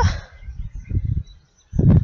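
Wind buffeting the microphone in uneven low gusts, dying away about a second and a half in.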